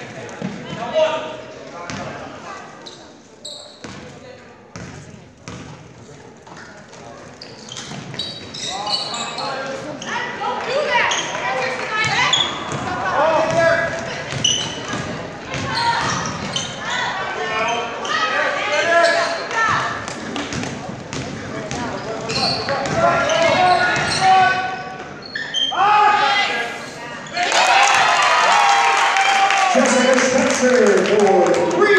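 Basketball being dribbled and bounced on a hardwood gym floor during game play, with players and spectators shouting and calling out over it. The voices get louder near the end.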